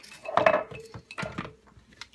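Lid being fitted onto a mini chopper bowl, clacking against it: a cluster of knocks about half a second in, then two more just after a second.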